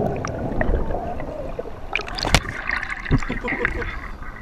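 A sharp knock on the action camera just over two seconds in as the camera is jolted and tips over, amid wind rumble and handling clicks on its microphone. Short calls or voices follow in the second half.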